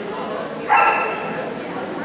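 A dog gives one loud, drawn-out bark about two-thirds of a second in.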